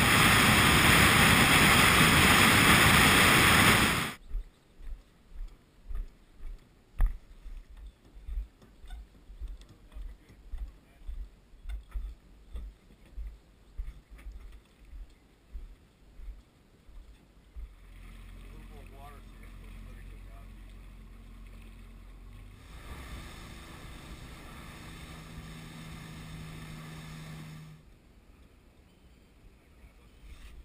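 A loud steady rush of car driving noise for about four seconds, then a run of soft low thumps about twice a second. An outboard motor then runs at low speed from about eighteen seconds in, gets louder for about five seconds and drops away near the end.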